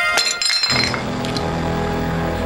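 Tableware dropped on the floor: a quick clatter of several sharp, ringing clinks lasting under a second. A low sustained music drone comes in just after.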